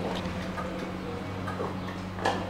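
Steady low hum of an in-ground hydraulic elevator heard inside its small cab, with a few light ticks and clicks.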